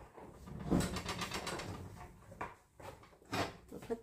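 Kitchen handling noises: an oven door swung shut on its hinges, with a quick run of rattling clicks about a second in and a short knock near the end.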